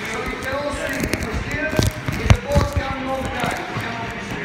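Indistinct chatter of boat passengers, with a few sharp, dull thumps about two seconds in.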